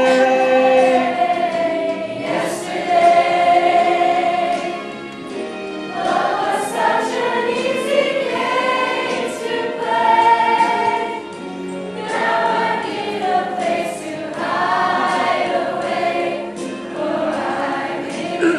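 High school choir singing a pop song in phrases of a second or two, with short breaks between them.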